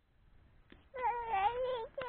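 A toddler whining: a high, wavering, drawn-out call that starts about a second in, breaks off briefly and starts again near the end.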